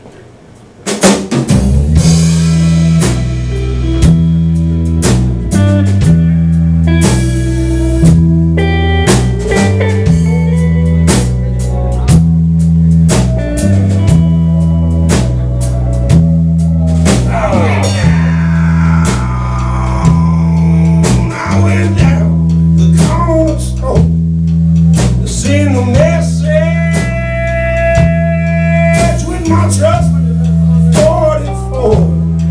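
A live rock band with a drum kit, bass, electric guitars and pedal steel guitar starts a song about a second in and plays an instrumental intro over a steady, repeating bass-and-drum groove. Sliding notes come in about halfway through.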